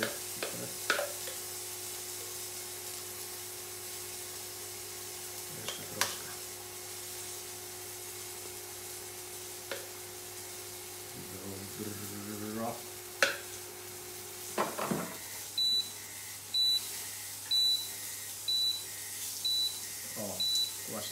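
Food sizzling in a frying pan on an induction hob, with a few sharp knocks of utensils. About fifteen seconds in, a steady hum stops and the hob starts giving a short high beep about once a second.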